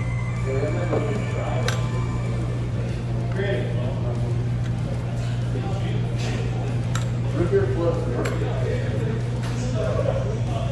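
Restaurant dining-room background: indistinct voices, a steady low hum, and several short, sharp clinks scattered through.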